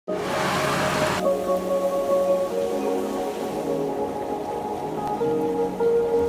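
Rain falling, with background music of steady held tones under it; the rain cuts off suddenly about a second in, leaving only the music.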